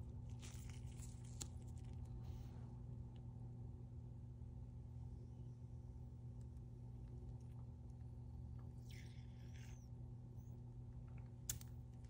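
Faint steady hum of a fan motor, likely the blower of the filtered work hood, with a few soft crackles and a click from a glass vial and syringe being handled as water is injected into the vial.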